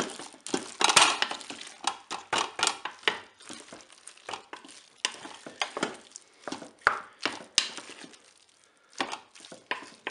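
A wooden spatula stirring cooked macaroni and chicken in the nonstick bowl of a Moulinex Cookeo multicooker. It scrapes and knocks irregularly against the bowl, with a quieter moment about eight seconds in.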